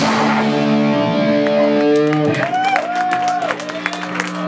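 Electric guitar ringing out through its amplifier after the band's last hit of a punk song: held notes sustain, and a higher note bends up and down near the middle. Scattered sharp clicks sound over it.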